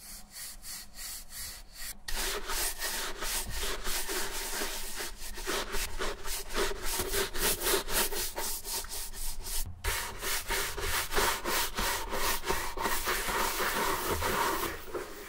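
Horsehair shoe brush swept quickly back and forth over a leather boot, dusting it off: a rapid, even run of bristle strokes, soft for the first two seconds and then much louder, with a brief break about ten seconds in.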